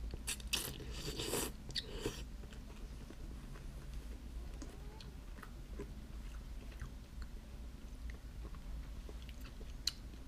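Ramen noodles slurped into the mouth in a few quick pulls over the first two seconds, then quiet chewing with small mouth clicks.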